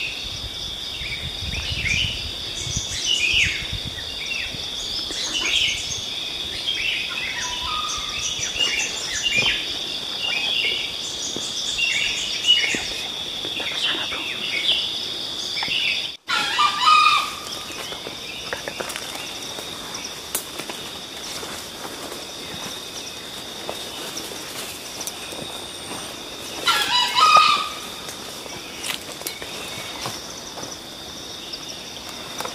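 Dawn forest birdsong: many small birds chirping over a steady high insect drone. A junglefowl rooster crows loudly twice, about halfway through and again near the end.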